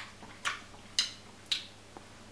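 A run of short, sharp mouth clicks about half a second apart, given as the giraffe puppet's attempt at the 'b' sound; the attempt is wrong, since it is not a voiced 'b'.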